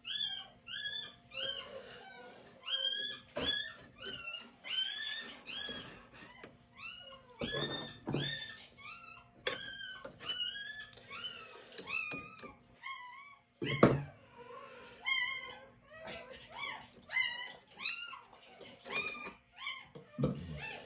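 A pet animal's repeated high-pitched cries, about two a second, rising and falling in pitch, with a few sharp clicks from the printer mechanism being worked on by hand, the loudest about fourteen seconds in.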